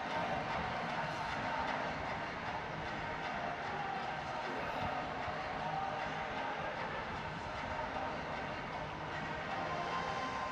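Steady background din of a large indoor sports hall, with faint voices mixed in.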